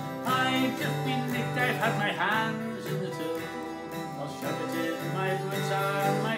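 Twelve-string acoustic guitar strummed in a steady country-style rhythm, playing an instrumental passage of chords.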